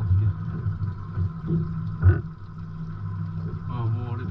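Fishing boat's engine running with a steady low drone, and a single sharp knock about two seconds in.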